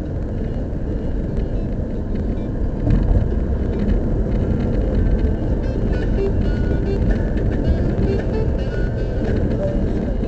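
A car driving on an expressway, heard from inside the cabin: a steady low rumble of road and engine noise, a little louder from about three seconds in.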